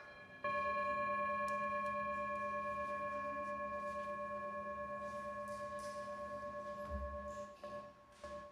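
Brass singing bowl struck once with a mallet about half a second in, then ringing with several steady overtones that fade slowly with a regular wobble. A soft low thump near the end.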